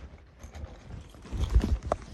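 A few dull thumps and knocks, the loudest cluster about one and a half seconds in, then a short click near the end.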